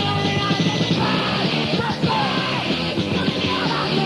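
Anarcho-crust punk song from a lo-fi demo tape: loud, dense full-band music with shouted vocals.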